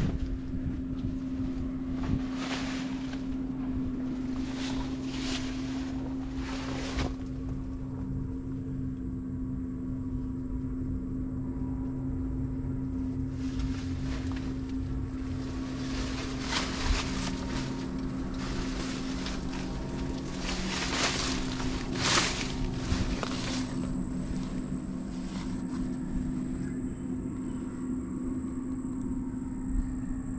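Steady low drone of a motorboat engine running at a constant pitch, with scattered brief rustles and scuffs.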